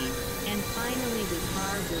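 Experimental electronic mix: steady synthesizer drone tones over a constant noisy hiss, with wavering, pitch-bending voice-like sounds curling up and down through it.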